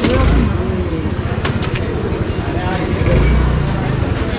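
Busy street-market bustle: background voices chattering, with a low rumble of motor traffic that swells near the start and again about three seconds in.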